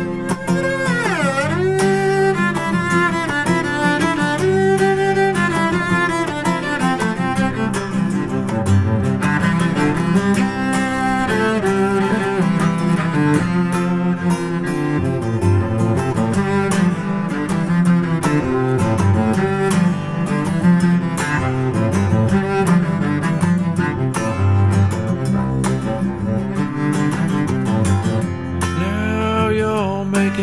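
Instrumental break in a folk song: a bowed cello melody over plucked strings, with a deep swooping slide in pitch about a second in.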